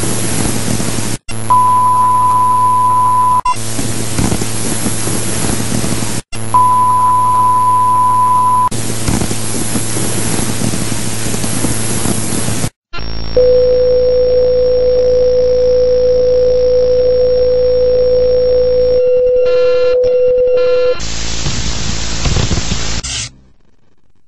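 Electronic glitch effects of loud static hiss cut into blocks, twice with a steady high beep laid over it. Then a long steady lower tone over quieter hiss, broken near the end by a few short stepped beeps, a last burst of static, and a sudden cutoff.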